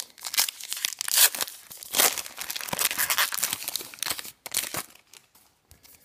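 The wrapper of a 2015 Topps Allen & Ginter baseball card pack being torn open and crinkled by hand. The crackle is loudest a little over a second in and dies away about five seconds in.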